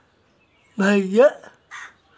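An adult's voice calling a short sing-song question to a baby, 'what's wrong?', about a second in, the pitch rising at the end.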